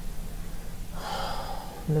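A person drawing in a breath close to the microphone, a short hiss about a second in lasting under a second, over a faint steady low hum.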